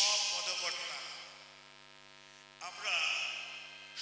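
Steady electrical hum from a microphone and public-address system, heard plainly in a pause between a man's amplified phrases. The voice trails off early on and comes back about two-thirds of the way through.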